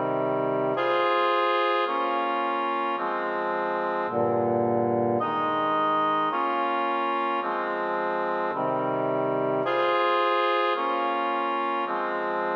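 Instrumental electronic music: sustained organ-toned keyboard chords, each held about a second before moving to the next in a slow, even progression.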